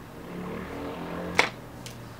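A single sharp click about one and a half seconds in, followed by a fainter click, over a faint low background sound.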